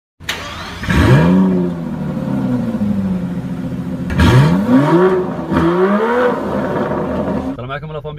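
Car engine revved three times while standing, each rev climbing quickly and sinking back to idle; the second and third come close together.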